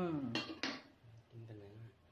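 Two sharp clinks close together of a utensil striking a stainless steel mixing bowl, over a woman's talking.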